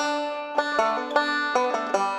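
Intro music: a quickly picked banjo tune, about five bright plucked notes a second.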